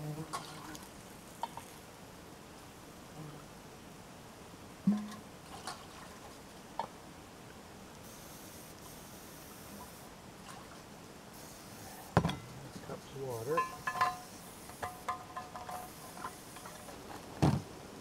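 Scattered clinks and knocks of pots, cans and utensils at a camp cooking table, with the loudest knocks about five, twelve and seventeen seconds in.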